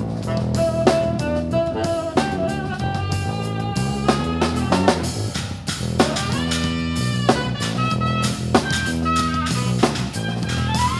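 Live blues-rock band playing an instrumental passage: a drum kit keeping a steady beat, an electric bass line underneath, and electric guitar holding long lead notes over the top.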